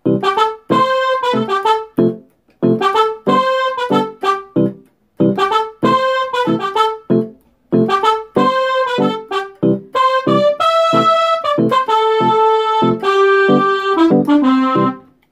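Keyboard playing the song's chord progression in C major: short chords struck in a steady rhythm, then longer held chords in the last few seconds.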